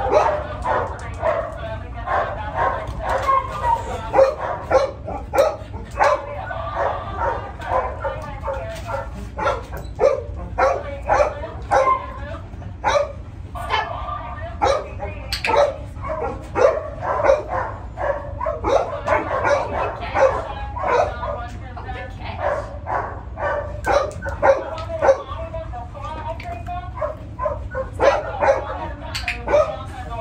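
A dog vocalizing over and over, a mix of drawn-out pitched whines and short sharp yips.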